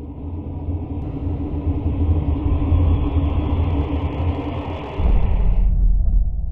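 A deep, loud rumbling sound effect under a title-card transition. It deepens into a heavier low boom about five seconds in.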